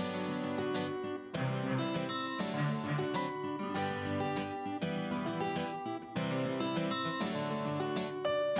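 Instrumental background music carried by plucked acoustic guitar, with a steady run of picked notes.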